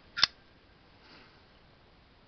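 Titanium frame-lock folding knife flipped open: one sharp snap about a quarter second in as the M390 blade swings out against its thumb-stud stop and the lock engages. The flipper action is not yet lubricated, at this preliminary assembly.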